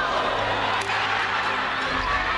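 Badminton racket striking a shuttlecock once, a sharp hit a little under a second in, over the steady echoing din of a sports hall with players' voices.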